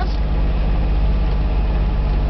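Engine of a Kubota utility vehicle running at a steady low drone while driving, with tyre and road noise, heard from inside the cab.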